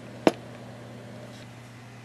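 A single sharp click from a CB radio's mode selector switch being turned to AM, over a steady low hum.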